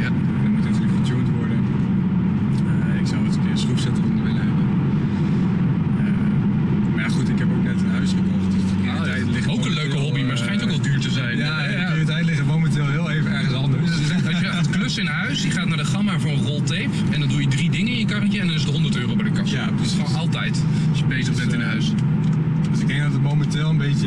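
Volvo C30 T5's turbocharged five-cylinder petrol engine idling steadily, heard from behind at the exhaust. About nine seconds in the sound changes abruptly to the steady engine and road drone heard inside the car's cabin while driving.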